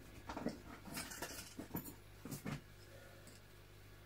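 Faint rustling and a few scattered light knocks of someone rummaging to find an item, over a low steady hum; the rummaging dies away in the second half.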